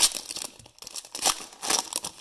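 Wrapper of a trading card pack crinkling and tearing as it is opened, in quick irregular crackles.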